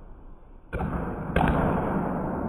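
Two sudden knocks, the first about three-quarters of a second in and the second about half a second later, each followed by a steady rushing noise that carries on to the end.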